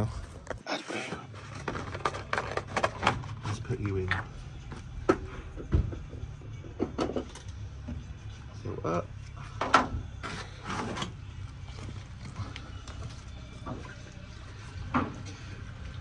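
Scattered clicks and knocks of hands working at a truck's AdBlue filler and cutting open a carton of AdBlue, over a steady low hum.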